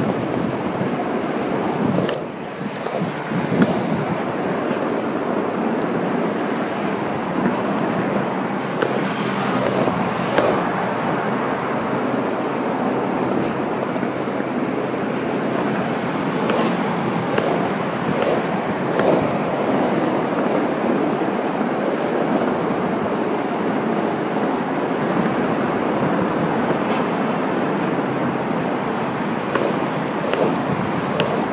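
A penny board's wheels rolling fast on an asphalt path at about 20 km/h, a steady rushing noise mixed with wind buffeting the microphone, broken by a few short knocks.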